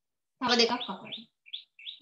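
A woman's voice speaks briefly, then there are three short high-pitched chirps in the last second.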